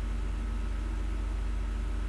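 Steady low electrical hum with a constant hiss behind it, unchanging throughout: the recording's background noise while the program loads.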